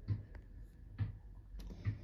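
A ball bounced repeatedly on the pavement in the street, three dull thumps a little under a second apart.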